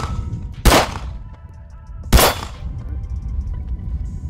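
Two shots from a CZ P-10 C striker-fired pistol, about a second and a half apart, each a sharp crack with a short echo.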